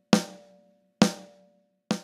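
Snare drum hit repeated about once a second, each a sharp crack with a short decaying ring, played through a software compressor set to a 6:1 ratio and a threshold of about −40 dB.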